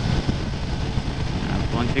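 Motorcycle cruising at highway speed: a steady engine drone mixed with wind rush, the rider's voice coming in near the end.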